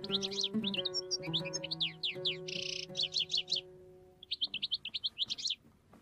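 A songbird singing in quick series of sweeping chirps and trills, with one short buzzy note about halfway through. Under it the last notes of an oud ring and fade away about four seconds in.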